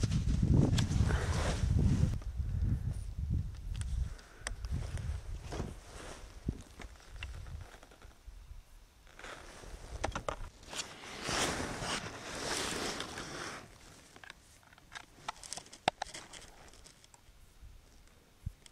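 Rustling and handling noises, with scattered clicks. The noise is loudest in the first few seconds and rises again around the middle.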